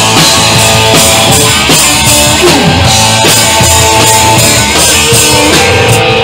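Live punk rock band playing loud: electric guitar, bass and drum kit driving a steady beat.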